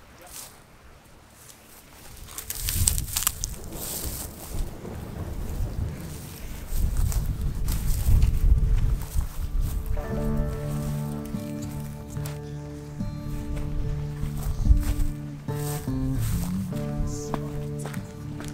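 Gusty wind noise on the microphone with rustling and knocks of scrub as people push through bushes on foot. Background music of sustained chords comes in about ten seconds in and carries on over it.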